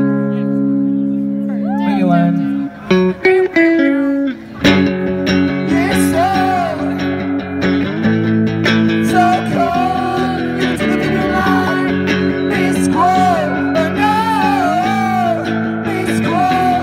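Live rock song on electric guitar: a chord rings out held, then the music drops away into the song's long pause, broken by a few short strokes, about three to four and a half seconds in. The song then kicks back in with full guitar, and a melody that slides up and down in pitch rides over it.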